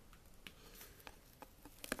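Faint, irregular small clicks and rubbing of plastic air tubing being handled and fitted onto the breast pump's connector ports, with a slightly louder cluster of clicks near the end.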